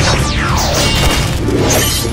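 Dramatic battle music layered with sword-fight sound effects: impact crashes and whooshes, with several falling swept tones in the first second.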